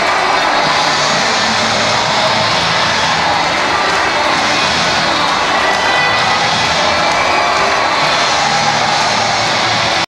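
Large indoor arena crowd cheering in a steady, unbroken roar at the end of the game, with music playing over it.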